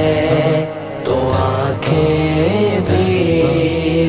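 A male voice singing a naat in long, drawn-out melodic lines over a steady, low, held vocal backing.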